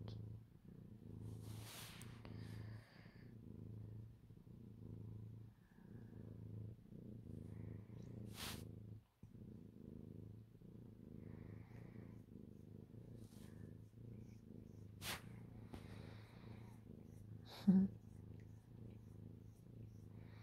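Domestic cat purring steadily while being stroked, with the purr breaking briefly between breaths a few times. A couple of sharp clicks sound over it.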